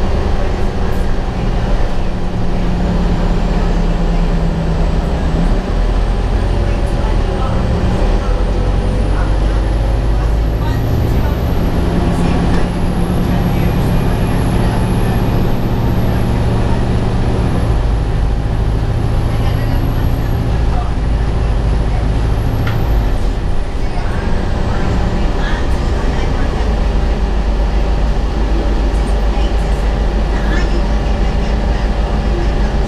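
Inside the cabin of a moving 2003 Gillig Phantom transit bus: a steady, loud drone of the engine, drivetrain and road noise. The engine tones shift in pitch as the bus changes speed, and a faint high whine rises and falls through the middle.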